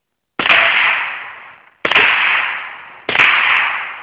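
Three rifle shots, the first about half a second in and the next two roughly a second and a half and a second apart, each a sharp crack followed by a long fading echo.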